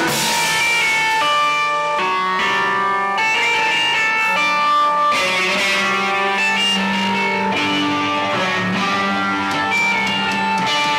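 Live rock band playing an instrumental passage on electric guitar and keyboard: a melody of held notes stepping to a new pitch every half second to a second, with no vocals.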